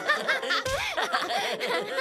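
Two cartoon characters, a pony and a small dragon, laughing hard together in quick repeated bursts of voice-acted laughter.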